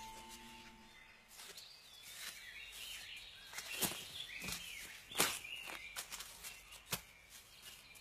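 Small birds chirping in a bamboo grove, with a few sharp knocks scattered through the middle and later part.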